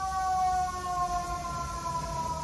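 A siren wailing with one long tone that slowly falls in pitch.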